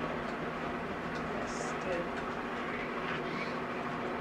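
Steady hum of a small electric motor, even and unbroken, with a faint rattle of noise over it.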